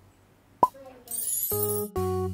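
A single sharp cartoon-style pop sound effect about half a second in, followed by a sparkly high shimmer. Bright children's music starts in near the end.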